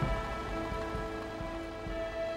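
Background music of long held notes, sustained chords with no beat.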